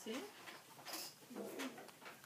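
Quiet speech in a small room: a brief spoken word, then a short murmured voice sound with a bending pitch about a second and a half in.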